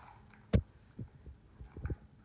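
A few soft low thumps with one sharper knock about half a second in, over quiet room tone.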